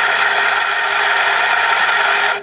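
Nuova Simonelli Grinta espresso grinder running, grinding coffee into a portafilter with a steady whir, at a setting taken about three notches coarser.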